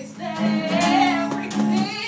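A woman singing a melody over a strummed acoustic guitar, her voice coming in about half a second in.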